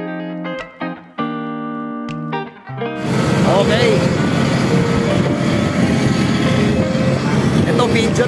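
A short music sting ends about three seconds in and is replaced by the loud, steady roar of jet airliners on the apron, with voices faintly over it.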